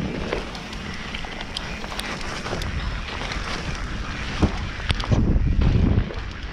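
Wind buffeting the action-camera microphone over the noise of mountain bike tyres rolling on a dirt trail, with scattered sharp clicks and rattles from the bike. A louder low rumble comes in about five seconds in.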